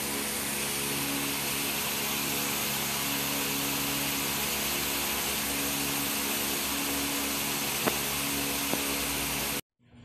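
Steady hiss with a faint low hum, the background noise of a home recording with nobody speaking. Two faint clicks come late on, and the noise cuts off suddenly near the end, where one recording ends and the next begins.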